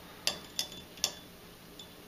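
pH meter probe knocking lightly against a water glass as it is swished in rinse water: three light clinks in the first second and a fainter one near the end.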